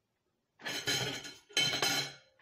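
Cooked mussel shells clinking and clattering against each other and the plate as they are picked through by hand, in two bursts of about half a second each, the first starting about half a second in.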